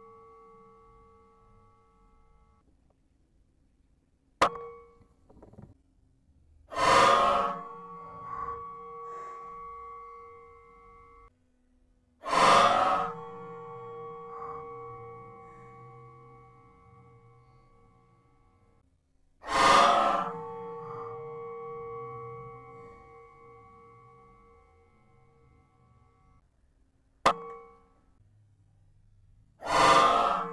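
Benjamin Marauder PCP air rifle firing three shots, each a sudden report followed by a metallic ringing that fades away over several seconds. Two sharp clicks fall about four seconds in and near the end.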